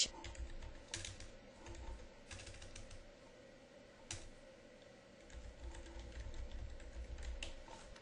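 Computer keyboard being typed on: faint, irregular keystroke clicks as a sentence is entered.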